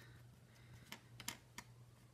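Near silence with a few faint, short clicks about a second in: the tip of a flux pen dabbing on the solder pads of a small flight-controller board.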